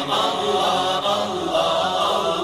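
A chorus of voices chanting at a steady level, without pause.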